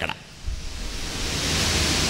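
A steady rushing hiss, with a low rumble under it, that swells up over about a second after the speech stops and then holds even.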